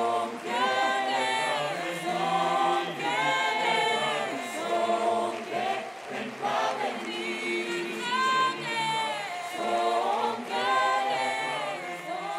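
A cappella choir singing, several voices together in held, flowing phrases.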